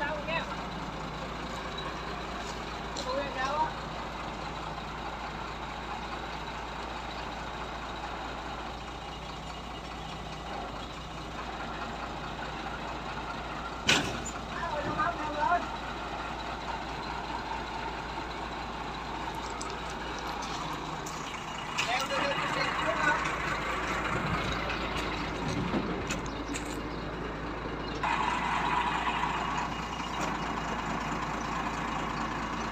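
Crane truck's engine running steadily while its boom crane hoists a boat hull on straps. There is a sharp knock about halfway through, and the machinery gets louder for several seconds in the last third. Short shouted voices come in now and then.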